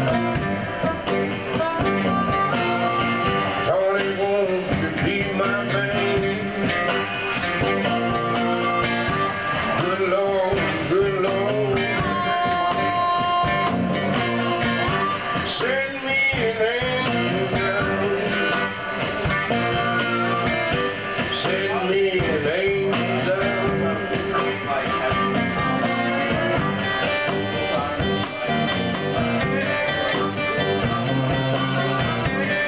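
Live blues band playing: a harmonica solo with bent and held notes over acoustic and electric guitars and a drum kit.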